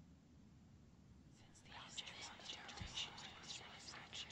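Faint whispering, starting about a second and a half in after near silence.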